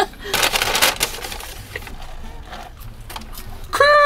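A woman laughing, breathy at first, trailing off into soft small clicks and rustles. A sustained pitched voice sound starts near the end.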